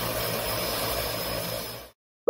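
Propeller-driven seaplane's engine running steadily, with a low hum under a wide rushing noise; it cuts off suddenly just before the end.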